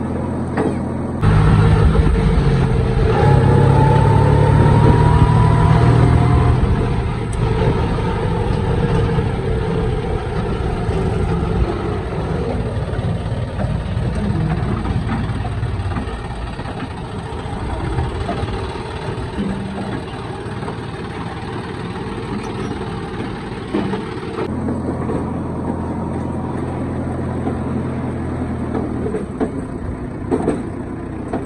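Diesel engine of a JCB 3DX backhoe loader running, heard from the cab, steady and even in pitch at the start and again near the end. In between, the sound changes abruptly to a louder, rougher diesel sound while the backhoe digs, with a rising whine for a few seconds, then settles lower.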